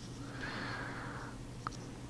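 A playing card sliding across a tabletop under the fingers: a soft hiss lasting about a second, over a faint steady hum.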